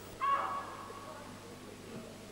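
A brief high-pitched shout from a spectator in the crowd, once, over the faint background of the hall.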